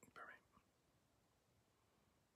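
Near silence: room tone, with one brief faint whisper-like breath at the very start.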